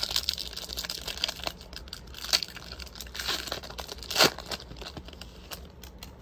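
Thin plastic trading-card packaging crinkling as it is handled, with scattered sharp clicks and one louder snap about four seconds in.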